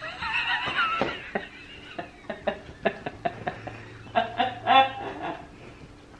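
A woman laughing hard: a high, wavering squeal in the first second or so, then short gasping bursts, and a louder run of laughs about four seconds in.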